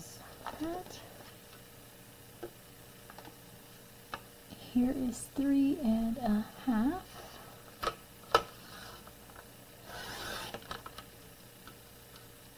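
Card stock handled and shifted on a paper trimmer, with sharp clicks about eight seconds in and a short scrape of paper about ten seconds in. A woman's voice murmurs a few words in the middle.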